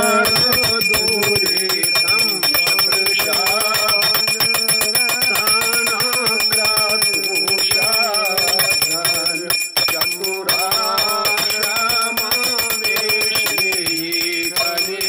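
A bell rung continuously with rapid strokes during a Shivratri puja, over voices singing a devotional hymn.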